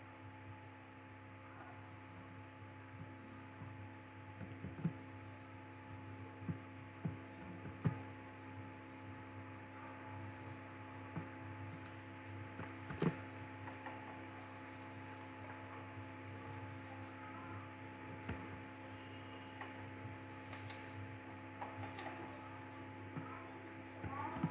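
Steady low electrical hum made of several steady tones, with a few faint scattered clicks; the sharpest click comes about halfway through and a couple more near the end.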